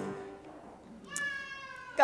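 The last sung and piano chord of a closing hymn fades out, then about a second in a faint, high-pitched held cry-like tone sounds for just under a second.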